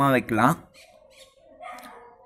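A man's voice speaking briefly for about half a second, then faint background noise.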